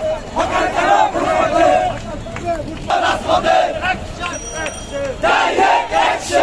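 A crowd of men marching and chanting a protest slogan in unison. The shouting comes in three loud bursts about every two and a half seconds, with weaker voices between.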